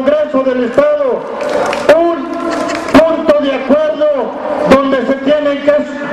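Only speech: a man speaking Spanish without pause, addressing the rally.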